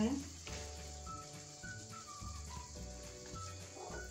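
Carrot halwa sizzling gently in ghee as a wooden spatula stirs it around a non-stick kadai, with soft background music playing over it.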